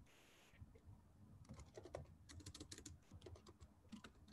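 Faint typing on a computer keyboard: a quick run of key clicks, sparse at first and close together from about a second and a half in.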